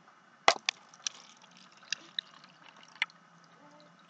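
Water pouring from a plastic bottle into a cup: a faint trickle broken by about six sharp plastic clicks and knocks, the loudest about half a second in.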